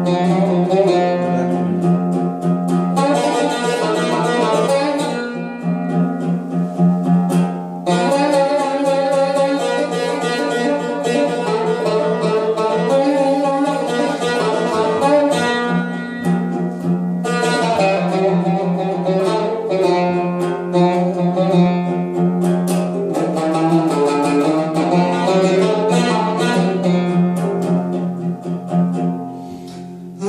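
Cümbüş, a fretless long-necked lute with a metal bowl and skin head, played with fast plucked strokes over a steady low drone note.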